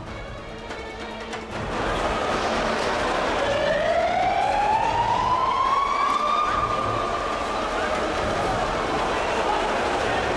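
Fire engine siren wailing, rising slowly in pitch over about three seconds and then holding, over the dense noise of a large stadium crowd shouting that grows louder a couple of seconds in.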